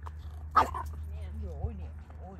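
A small dog gives one short, loud bark about half a second in.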